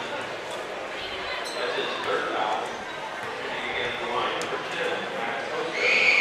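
Crowd chatter echoing in a school gymnasium while a free throw is taken, with a few soft basketball bounces. The crowd gets louder near the end as the shot goes up.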